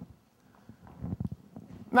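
Soft, irregular low thuds of footsteps on a stage, picked up by a clip-on microphone, with a short click at the start.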